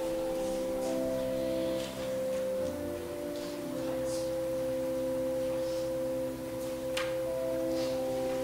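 Slow offertory music of soft, sustained keyboard chords in pure, steady tones that change every second or two. A faint click comes near the end.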